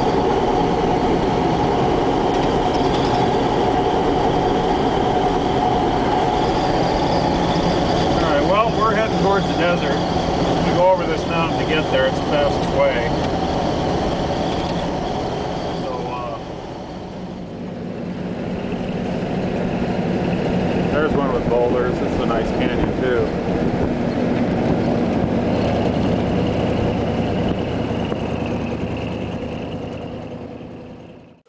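Engine and road noise inside a moving vehicle: a steady drone that dips in level about halfway through. Short wavering high sounds rise over it twice.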